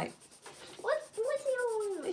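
Graphite pencil scratching softly across sketchbook paper as it shades in a drawing. From about a second in, a high voice makes a long wordless sound that slowly falls in pitch and is louder than the pencil.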